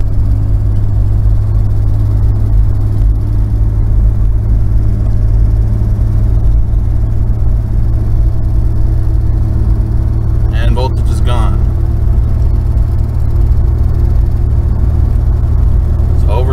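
Inside the cabin of a 1991 Ford Explorer driving in third gear: a steady, loud low drone of the 4.0 V6 engine and road noise. The engine note rises slowly as the truck accelerates toward the 3-4 upshift.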